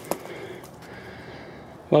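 Quiet outdoor background with one short sharp click just after the start, then a man's voice begins right at the end.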